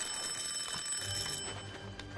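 A high, steady bell-like ringing, like an alarm clock, lasting about a second and a half. Low music comes in under it about a second in.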